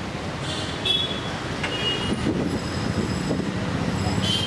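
Street traffic noise: a steady low rumble that grows slightly louder, with a few short high-pitched squeaks in the first two seconds.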